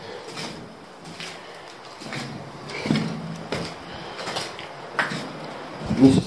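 Irregular footsteps, scuffs and small knocks inside a small concrete bunker room, with the echo of the room on them.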